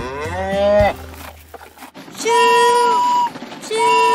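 A cartoon cow moos, its pitch rising through the first second. Then a toy steam train's whistle toots twice, each a steady held note about a second long, the second one starting near the end.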